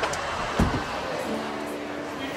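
A car door shutting with a single dull thump about half a second in, followed by a low steady hum.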